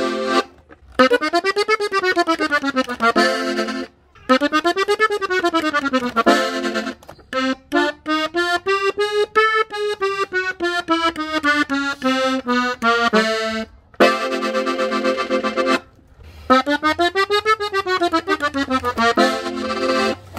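Gabbanelli button accordion in F playing a quick chromatic ornament run up and down the treble buttons. The figure is repeated several times with short breaks, and the middle pass is longer and slower.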